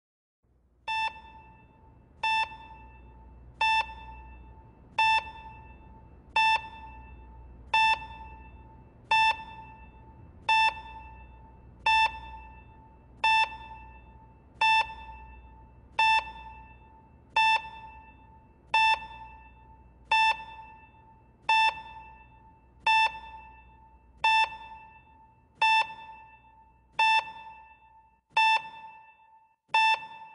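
Hospital bedside patient monitor beeping with each heartbeat: one short, clear tone about every 1.4 seconds, a slow, steady pulse, over a faint low hum.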